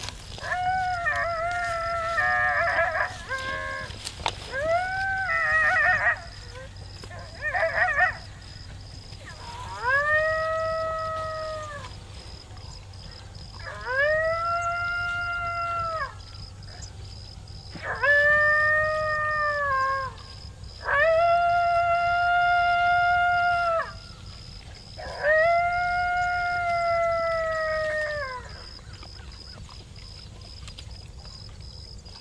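Electronic predator call (FoxPro) playing recorded coyote howls: three short, wavering howls, then five long drawn-out howls a few seconds apart, each rising, holding and falling away.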